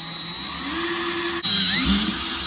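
Cordless drill boring out a hole in a steel bracket clamped in a bench vise, the motor running under load and its pitch slowly rising. About one and a half seconds in the sound breaks off for a moment, then comes back louder with short squeals as the bit cuts into the metal.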